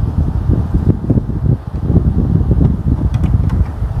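Low, uneven wind noise buffeting the microphone, rising and falling in strength, with no clear tone in it.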